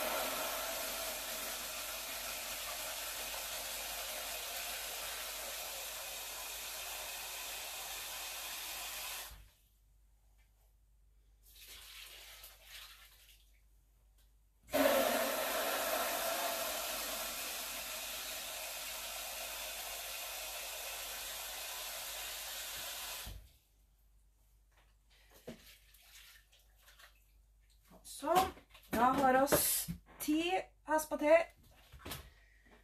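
Water running from a kitchen tap in two spells of about nine seconds each, each starting and stopping abruptly. The second spell starts about 15 seconds in.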